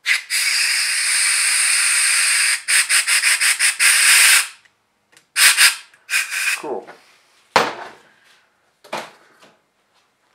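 Compressed-air blow gun hissing as it blows out a freshly drilled and tapped passage in a TH400 transmission pump. There is one long blast of about two and a half seconds, then a quick series of short bursts, then a few shorter blasts and a sharp click.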